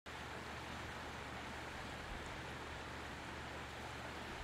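Steady rush of a shallow river flowing over rocks.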